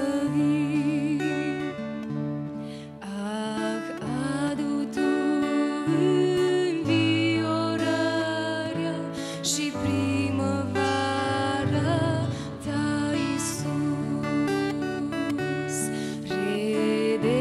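A woman sings a Romanian worship song into a microphone, with vibrato on held notes, accompanying herself on an acoustic guitar whose chords change every second or two.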